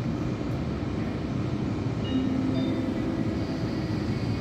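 Electric locomotive (ÖBB class 1216 Taurus) pulling a Railjet train slowly away from the platform: a steady, even rumble with a faint hum about halfway through, echoing in an underground station hall.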